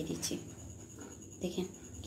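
Soft rustling and rubbing of a damp muslin cloth as a ball of fresh chhena is pulled out of it by hand. Two short spoken syllables from a woman come at the start and again about a second and a half in.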